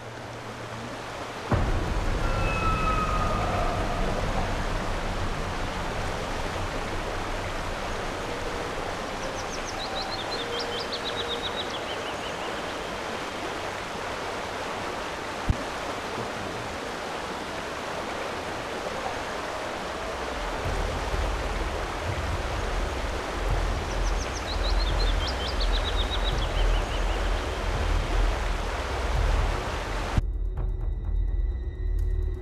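Steady flowing river water, with a short descending trill, likely from a bird, heard twice, about ten seconds in and again near twenty-five seconds. A low rumble builds under the water in the last third.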